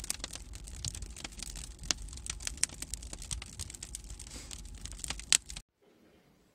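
Wood fire of pine logs and pallet skids crackling and popping in an open-doored wood furnace: sharp, irregular snaps over a low steady rumble. It cuts off suddenly near the end.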